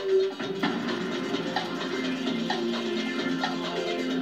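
Quiz-show countdown music for the 30-second thinking time: a light percussive theme with a regular tick about once a second over a sustained bass line, heard through a television speaker.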